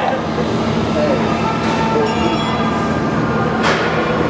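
Steady, loud machinery drone with a low hum, with faint voices in the background.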